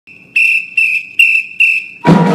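A drum major's whistle held on one high note, with four evenly spaced accented blasts at about two and a half per second: the count-off that starts a marching band playing.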